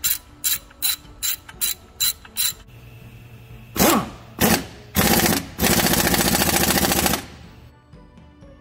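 A hand ratchet clicking in quick strokes, about two and a half a second, as nuts are run down on a diesel engine. About four seconds in, a cordless power tool runs in a couple of short bursts and then steadily for about a second and a half, driving the nuts tight.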